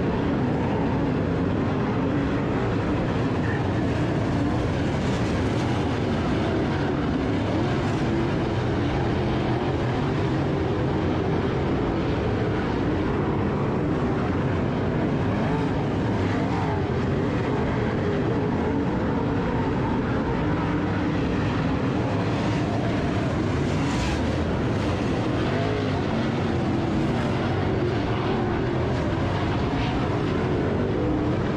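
A field of dirt-track modified race cars running laps, their V8 engines under throttle. The engines blend into one steady, continuous sound that does not let up.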